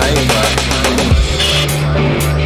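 Rock music from a studio album track: wavering, sliding pitched lines over steady low bass notes, with the arrangement shifting about a second and a half in.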